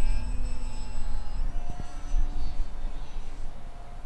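Distant electric RC plane's brushless motor and 8x6 propeller whining as a thin, steady set of tones that shifts in pitch about a second and a half in as the throttle changes, over low wind rumble on the microphone.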